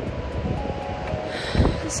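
Wind rumbling on the microphone, a steady low noise, under soft background music with long held notes. A single spoken syllable comes near the end.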